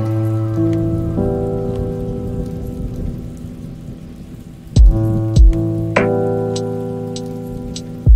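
Slow relaxation music of held notes that fade away, over a steady rain sound. New notes are struck about five and six seconds in, each with a deep low thump.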